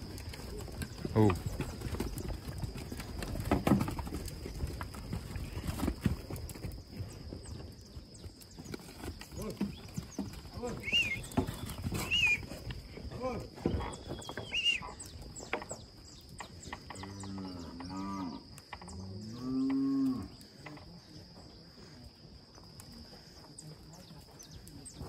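Young Nelore and Aberdeen-cross bull calves in a corral, with scattered knocks and shuffling of hooves and bodies in the first half, and two deep moos one after the other near the end.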